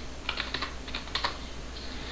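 Typing on a computer keyboard: a quick run of key clicks as a terminal command is entered.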